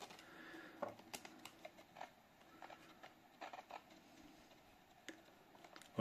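Near silence with a few faint, short clicks from the plastic radio being handled.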